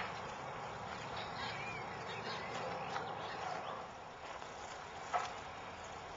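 Outdoor ambience: a steady hiss with a few faint bird calls, and a soft click at the start and another about five seconds in.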